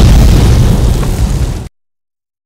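A very loud burst of noise like an explosion, starting suddenly and cutting off abruptly after about two seconds.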